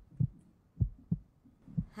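Heartbeat sound effect: low double thumps, lub-dub, about once a second, played for suspense during the decision countdown.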